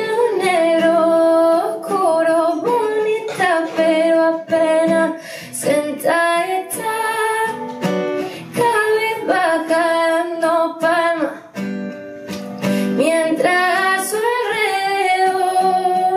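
A woman singing live over her own acoustic guitar, her held notes bending and sliding in pitch.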